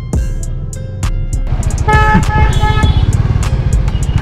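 Background music with a beat over a Kawasaki Z900 motorcycle's engine and exhaust, which grows louder about a second and a half in; a vehicle horn beeps a few times around the middle.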